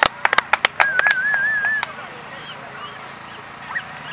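Sideline spectators clapping, a quick run of claps in the first second, then a wavering high whoop lasting about a second; faint distant shouts from the field after.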